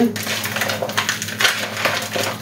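A spoon stirring crushed dry ramen noodles through shredded cabbage slaw in a plastic bowl: irregular crunching, rustling and scraping, over a steady low hum.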